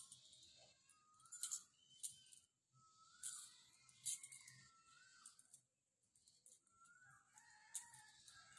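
Quiet background with a few faint, short, wavering bird-like calls and scattered light clicks.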